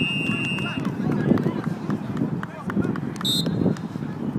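Indistinct chatter of players and onlookers across an open playing field, with no clear words, and a short high tone a little after three seconds.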